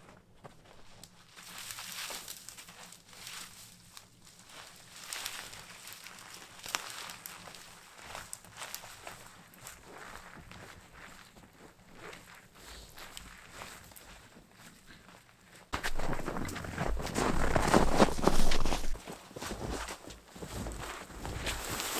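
Footsteps crunching in deep snow and snow-laden spruce branches rustling and scraping as they are hauled away. The sound is fainter and more distant at first, then much louder and closer from about sixteen seconds in.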